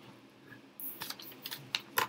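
A few irregular light clicks and taps of small objects handled on a desk, with a brief rustle just before the first click.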